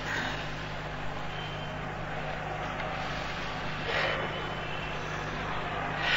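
Steady background noise with a constant low hum, swelling slightly about four seconds in.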